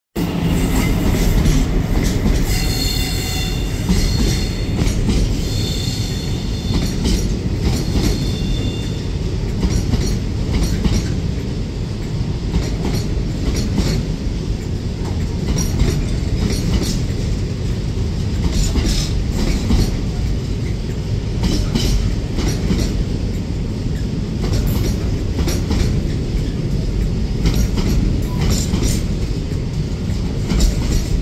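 Container freight train hauled by a Class 66 diesel locomotive rolling past at low speed: a steady low rumble with wheels clicking and clattering over points and rail joints. Bouts of high-pitched wheel squeal come between about three and nine seconds in.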